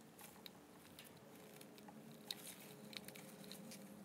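Near silence, with a few faint, scattered clicks and crackles of an X-Acto craft knife cutting around the eye of a heat-softened vinyl toy head.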